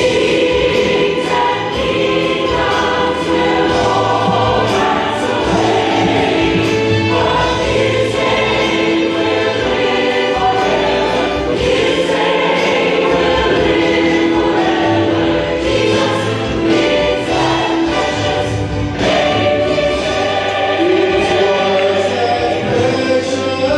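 Mixed church choir singing a gospel song in full voice, holding long notes.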